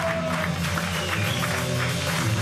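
Live rock band playing: electric guitars, bass and drum kit in a steady driving rhythm.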